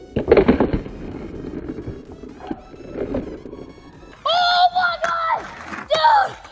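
Skateboard landing a kickflip: a few sharp clacks of the deck and wheels hitting the asphalt about half a second in, then the wheels rolling on rough street asphalt. About four seconds in, loud excited shouting begins.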